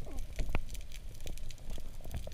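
Underwater crackle as heard through an action camera's waterproof housing: many scattered sharp clicks over a steady low rumble, with a short falling squeak just after the start.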